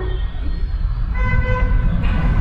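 A steady low rumble, joined about a second in by a single flat, held tone with a horn-like timbre that lasts about a second.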